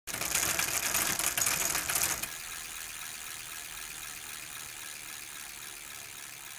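Channel-intro sound effect: a fast, dense clicking rattle, loud for about the first two seconds, then dropping to a quieter steady rattle that carries on to the end.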